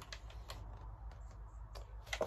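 Faint clicks and light knocks of handling as a chainsaw is picked up and lifted, over a low steady room hum.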